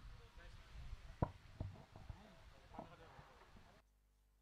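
Faint, distant voices with two sharp clicks a little over a second in. The sound cuts off abruptly to silence near the end.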